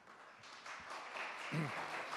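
Audience applause starting faintly and swelling to a steady patter of many hands clapping. A brief voice sound comes about one and a half seconds in.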